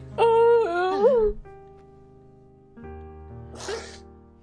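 A woman crying: a loud, wavering wail about a second long that dips and then rises in pitch, then a sharp sniff through a tissue near the end, over soft sustained music.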